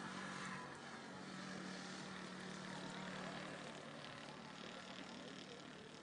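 A faint, steady engine hum with an even hiss over it.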